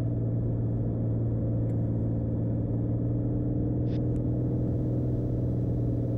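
Beechcraft Bonanza's single piston engine and propeller droning steadily in the cockpit on final approach, with a couple of faint clicks.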